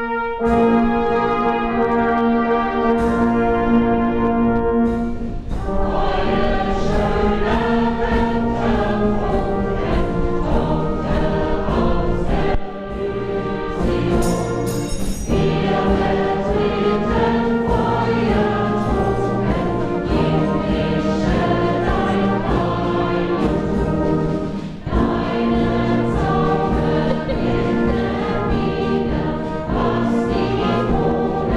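A mixed amateur choir singing with a brass band accompanying it. It opens with a long held chord, and about five seconds in the full ensemble comes in with a steady rhythmic accompaniment.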